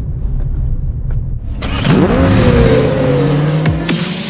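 Low, steady engine and road noise inside a Suzuki Ertiga's cabin. About one and a half seconds in it gives way to a louder rushing sound-effect intro whose tones sweep upward and then hold, falling away near the end.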